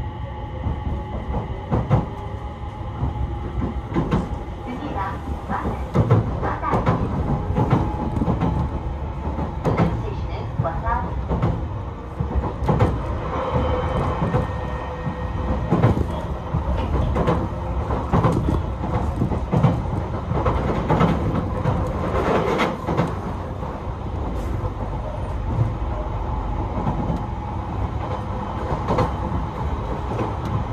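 JR East E721-series electric train heard from inside the carriage while running: a steady rumble of wheels on rail with irregular clicks and knocks throughout.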